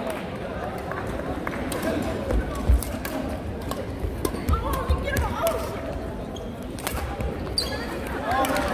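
Badminton doubles rally: sharp clicks of rackets striking the shuttlecock and dull thuds of players' feet landing on the wooden court floor, scattered irregularly through the rally.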